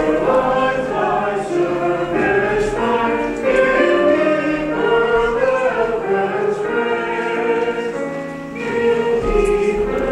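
Choir singing the offertory music of a Eucharist service, many voices holding long notes together. The singing dips briefly about eight seconds in, then carries on.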